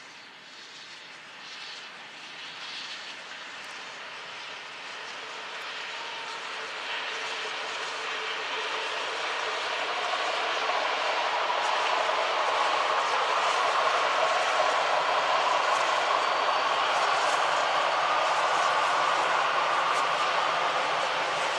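Steam train with coaches passing, its running sound growing steadily louder through the first half as it draws nearer, then holding steady.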